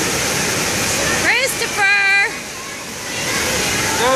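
Continuous rush of water from water-park play features, with a child's high-pitched calls about a second and a half in, the last one held for about half a second.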